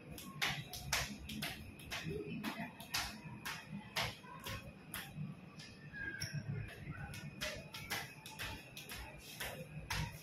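Skipping rope slapping the concrete floor in a steady rhythm, about two sharp slaps a second, during a one-minute speed-skipping test, with faint landings of the feet.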